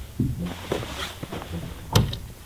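A person working the door of a small plastic-shelled gear pod by hand, with soft knocks and a sharp click just before the end.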